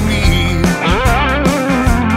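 Recorded blues song with no vocals here: an electric guitar plays a fill of bent notes over bass and drums.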